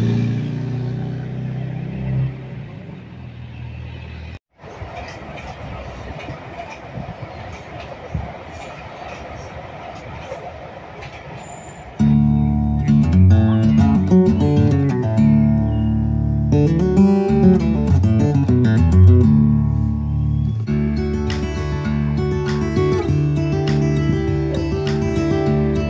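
A car drives past on the road, its rumble fading away, then after a cut a steady hum of outdoor background noise. About halfway through, guitar music comes in loudly and plays on.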